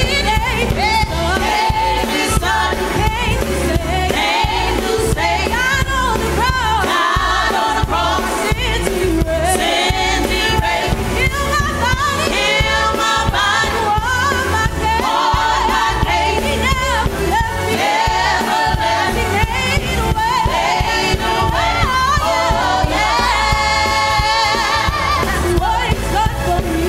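A gospel praise team of men and women singing together in harmony, with live instrumental accompaniment including keyboard.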